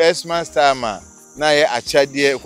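A man talking animatedly, with a short pause about a second in. Behind the voice runs a steady high chirring of crickets.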